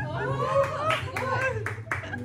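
Hand claps, about six in quick succession at roughly three a second starting about half a second in, over people's voices talking, as applause for a karaoke song that has just been sung.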